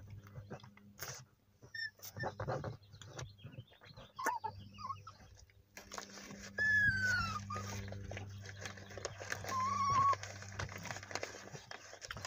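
A small dog whining in a few short, high, falling cries, the clearest a little past the middle, with a plastic bag crinkling in between, over a steady low hum.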